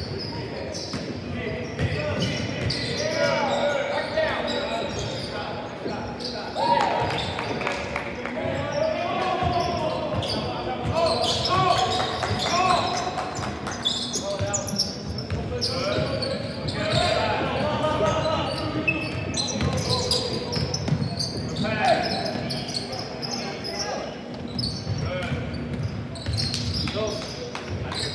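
Basketball dribbled on a hardwood court during live play, with players' shouts and calls echoing around a large gym.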